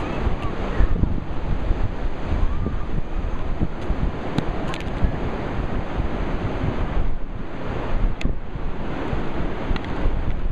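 Wind buffeting the microphone, a constant low rumbling roar, over the wash of ocean surf.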